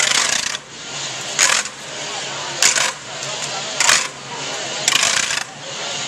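Censers swung on their chains, the metal clinking in a short jingle about once every second and a bit.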